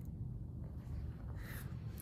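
Quiet room tone with a steady low hum, and a faint soft rustle about one and a half seconds in.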